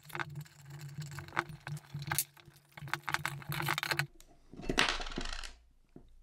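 Metal parts of a Numeric Racing short shifter clicking and clinking as it is handled and worked by hand, over a low steady hum that stops about four seconds in. A short rustle follows near the end.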